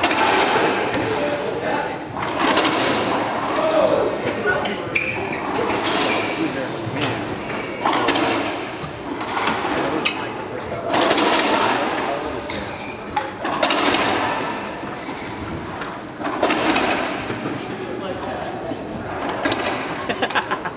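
Racquetball rally in an enclosed court: the ball's hits off racquets and walls ring out with a long echo, starting sharply every few seconds, over indistinct voices.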